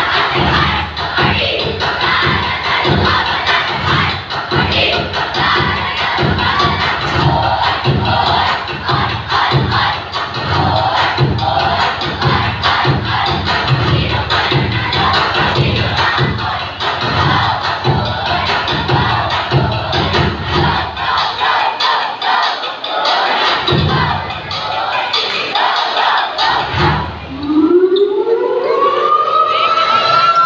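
A crowd of children shouting and cheering through a cheer-dance routine over loud music, whose low beat runs at about two a second. The beat drops out about three-quarters of the way in, and near the end a rising tone sweeps up under louder cheering.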